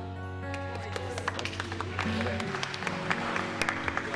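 The band's held final chord rings on and cuts off about two and a half seconds in. Scattered clapping and small knocks come in over it as the song ends.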